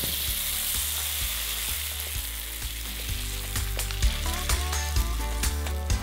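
A dry rice paper sheet frying in hot oil in a steel wok: a steady sizzle, loudest in the first second as the sheet goes in and puffs up.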